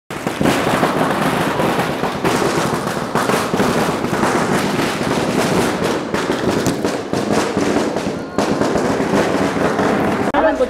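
A string of firecrackers bursting in a rapid, irregular crackle, with people's voices over it.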